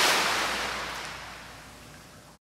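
Steady rushing noise of swimming-pool water picked up by an underwater camera. It fades out steadily.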